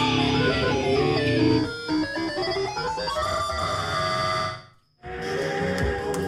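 Electro-punk band playing live: electric guitar and keyboards, loud and dense, thinning out a couple of seconds in. Near the end the sound cuts out completely for about half a second, then the guitar comes back with sharp, hard hits.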